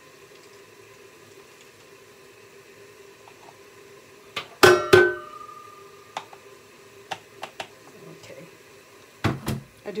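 Objects being handled on a work surface: two loud clinks with a short ringing tone about halfway through, then a few light taps, and two more knocks near the end, over a steady low hum.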